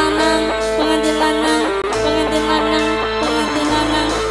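Live band music played loud through a PA system: an instrumental passage, without singing, in which a melodic lead moves through a series of held notes over a steady bass.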